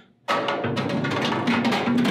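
Stainless-steel scrap basket of a commercial dish machine being set into its slot: a dense metallic rattle and scraping clatter, with a ringing tone, starting suddenly a moment in.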